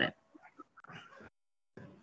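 A pause in speech over a video call: only faint, brief low-level sounds, then about half a second of dead silence before the voice returns.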